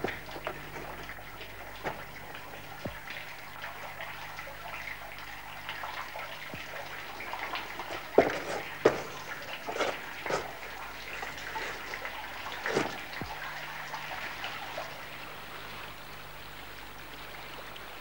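Water trickling in a cave, with sharp, irregular drips every second or few seconds over a steady hiss.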